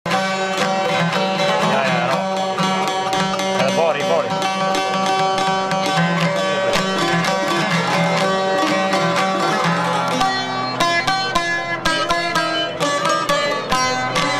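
Albanian folk string ensemble playing an instrumental passage: a violin with wavering vibrato over quick plucked notes from long-necked lutes such as the çifteli. The plucking turns busier and sharper in the last few seconds.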